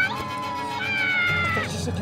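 High-pitched squealing cries of an Ewok: a short yelp, then two drawn-out calls, the second higher and slowly falling.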